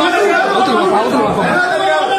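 Crowd chatter: several men talking loudly over one another without a pause.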